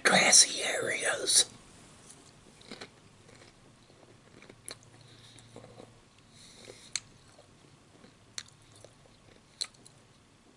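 A man's voice for about the first second and a half, then close-miked chewing with a few sharp wet mouth clicks as he eats a sausage sandwich.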